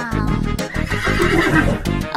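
A horse whinny sound effect, a fluttering call from about half a second in, over children's background music.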